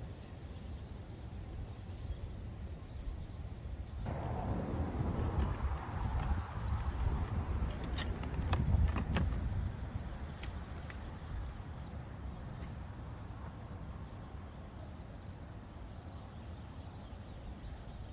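Outdoor ambience: a steady low wind rumble on the microphone with a faint high chirp repeating about twice a second. A louder rustling stretch starts suddenly about four seconds in and fades by ten seconds, with a few sharp clicks near the middle.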